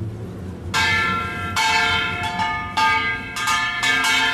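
Bell-like metal percussion struck repeatedly, starting about three-quarters of a second in. There are about six strokes, each ringing on with several clear tones.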